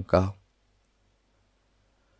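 A voice speaking for a moment at the start, then near silence.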